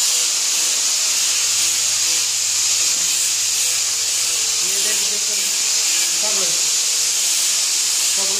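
A steady, high-pitched hiss that never lets up, with a faint low hum under it and faint voices in the background.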